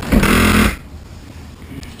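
Electric motor of the cockpit sun-pad mechanism running as a loud rush that cuts off suddenly about three-quarters of a second in, leaving a low background hum.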